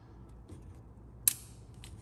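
A single sharp click as a catch-can hose's quick-connect fitting is pushed onto the can's side port, with a few faint ticks of handling before and after it.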